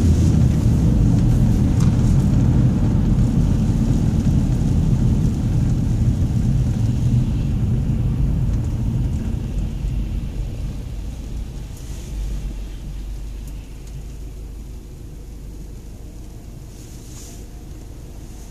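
A car's road and engine noise heard from inside the cabin, a low rumble that dies away steadily as the car slows to a stop at a red light, leaving a quieter idle hum.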